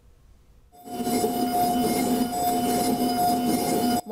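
Dental-lab milling machine running: a steady motor whine holding two constant notes over a continuous hiss, starting about three-quarters of a second in.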